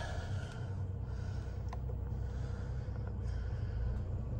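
Mercedes-Benz GLC 250's 2.0-litre turbocharged four-cylinder petrol engine idling at about 1,000 rpm, a steady low hum heard from inside the cabin.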